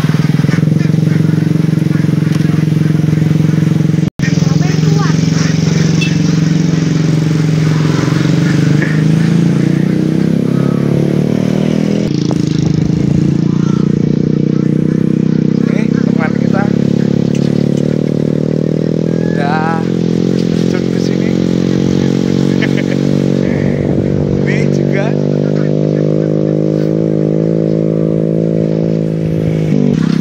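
Small motorcycle engine running steadily, its pitch drifting slowly up and down. The sound drops out for an instant about four seconds in.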